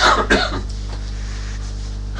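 A person coughing twice in quick succession within the first half-second, followed by a steady low hum.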